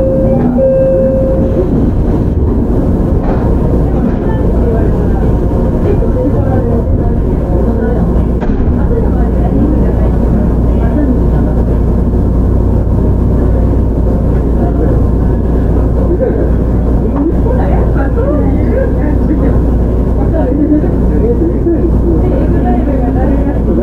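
JR Shikoku 7000 series electric train, an unrefurbished car with Hitachi GTO-VVVF drive, running along the line, heard from on board: a steady, loud rumble of wheels and running gear on the rails that keeps an even level throughout. A short steady tone sounds in the first second or so.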